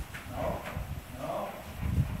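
Horse's hooves thudding on soft arena footing, with two short animal calls about half a second and just over a second in.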